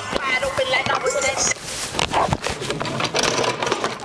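Several students talking and laughing at once in a lecture hall, mixed with rustling and short knocks. The song that played just before has stopped or dropped to a trace.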